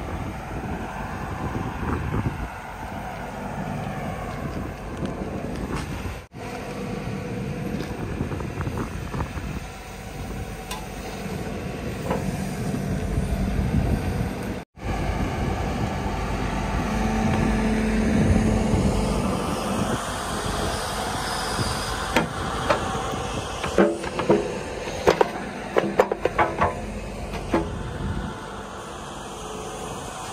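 JCB 145 tracked excavator's diesel engine running with its hydraulics working as the boom lowers and positions a bucket. In the last third, a run of sharp metal clanks and knocks as the quick-hitch coupler is brought onto the bucket's pins.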